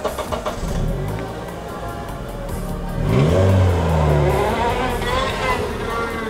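A car engine revving up, its pitch rising about three seconds in and then holding for a second or so, over background music.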